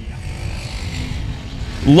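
Pure stock race cars' engines running as the pack comes through a turn on a dirt oval: a steady low rumble.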